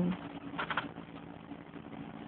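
Low room noise with a faint steady hum. A woman's hummed 'mm' trails off at the very start, and a short rustle comes about half a second in.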